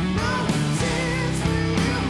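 Rock band playing live: heavy electric guitar, bass guitar and drums, with a woman's voice singing over them.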